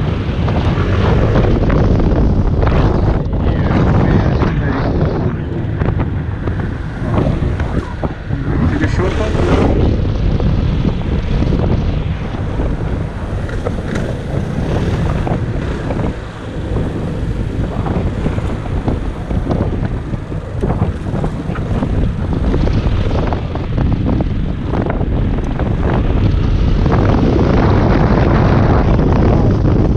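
Yamaha X-MAX 250 maxi-scooter under way, its single-cylinder engine running under wind buffeting the microphone, a little louder near the end.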